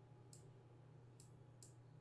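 Three faint computer mouse clicks as on-screen sliders are grabbed and released, over a low steady hum.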